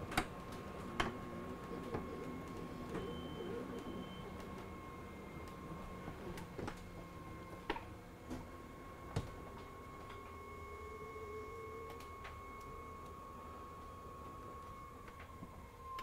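The electric slide-out mechanism of a Newmar Dutch Star motorhome runs, extending the slide room with a faint, steady motor whine and a few light clicks. The whine dies away just before the end as the slide settles fully out to a flush floor.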